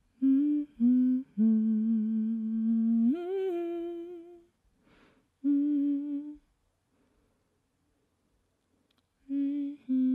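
A woman humming a slow melody a cappella: two short notes, a long low note that steps up and is held, a breath, one more note, then a pause of about three seconds before the humming resumes near the end.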